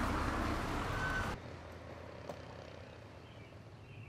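A steady rush of street traffic noise that cuts off suddenly about a second in, leaving quiet outdoor ambience with a single faint click.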